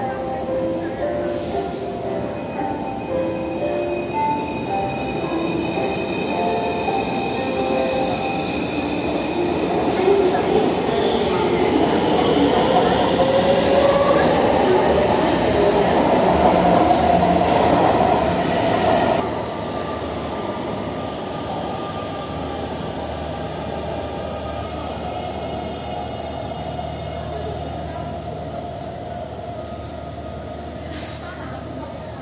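Taipei MRT metro train pulling out of an underground platform. Its traction motors whine, rising in pitch as it accelerates, over wheel and rail noise that grows loudest around the middle. A little past halfway the noise drops suddenly, leaving a steadier station hum.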